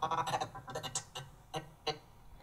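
Choppy, stuttering snippets of a song's vocal and backing music as the audio track is scrubbed back and forth by dragging the playhead on an editing timeline, thinning to a few isolated clicks in the second half.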